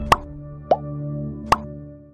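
Logo-animation pop sound effects over a held, fading musical chord: three short pops, one just after the start, a bloop that slides upward about three-quarters of a second in, and another at about a second and a half, while the chord dies away near the end.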